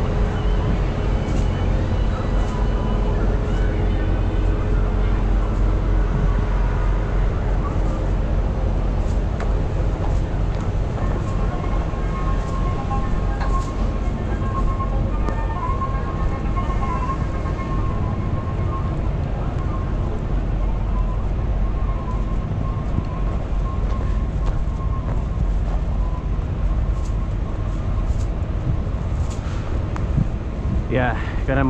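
Steady low rumble of idling semi-truck diesel engines, with faint higher hums that come and go.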